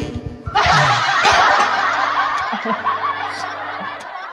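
Laughter, a dense burst beginning about half a second in and fading out near the end, over a quiet music backing track.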